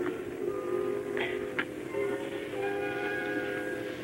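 Opera orchestra playing slow, sustained held chords in a poor-quality 1960 live recording, with two brief clicks a little over a second in.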